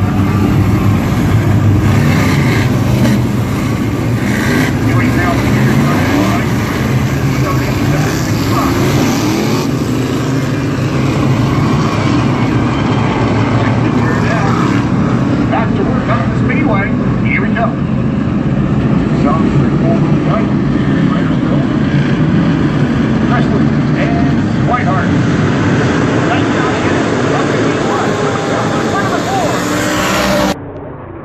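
A field of 358 modified dirt track cars' V8 engines running together in a steady, loud drone as the pack circles the track, with voices mixed in.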